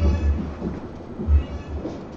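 Background din of a darts bar with two low, rumbling thuds, one at the start and one about a second and a half in.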